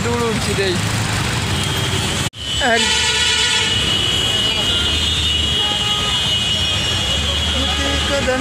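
Road traffic in a jam: low engine rumble with a vehicle horn held steadily for about five seconds. The sound drops out abruptly just over two seconds in, just before the horn.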